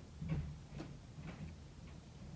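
Faint soft taps of a makeup sponge dabbing concealer onto the face, about two a second.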